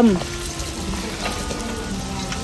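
Wet squelching and rustling of thinly sliced raw beef being kneaded into its marinade by plastic-gloved hands in a stainless steel bowl, a steady wet hiss with no distinct strokes.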